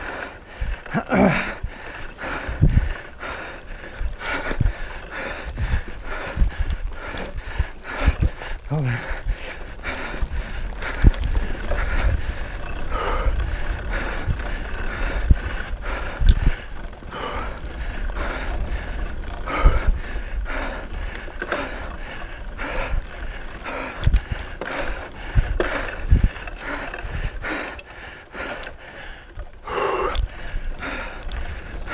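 Mountain bike ridden over a rough forest dirt trail: the frame and parts rattle and knock again and again over the bumps, over a steady low rumble.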